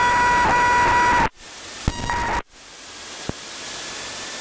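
Light-aircraft cockpit noise picked up on the headset intercom: a steady hiss with a thin high whine that cuts out abruptly about a second in and again about two and a half seconds in, then comes back as a quieter hiss that slowly grows louder.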